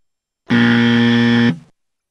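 Alert buzzer sound effect: one steady, loud buzz about a second long, starting about half a second in and cutting off sharply.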